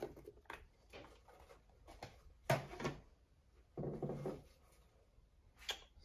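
Plastic knocks, clicks and scrapes as a black plastic hide box is lifted out of a clear plastic snake tub. The loudest knock comes about two and a half seconds in, with another short cluster of handling noise around four seconds.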